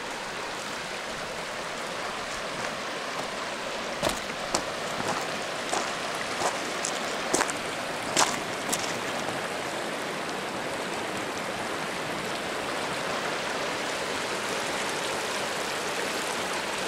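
A shallow mountain river running over rocks and gravel bars, a steady rushing of water. A few brief, light ticks sound between about four and nine seconds in.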